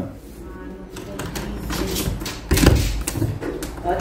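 An apartment door's lock and latch being worked from outside: a few light clicks, then a louder thump about two-thirds of the way through as the door is unlocked and opened.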